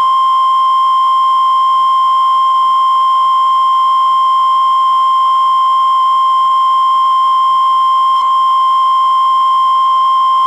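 Steady 1 kHz line-up tone of the kind that goes with SMPTE colour bars, a single unbroken pitch held loud and unchanging.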